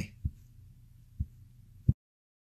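Three short, low thumps over a faint steady hum, the last and loudest just before the sound cuts off.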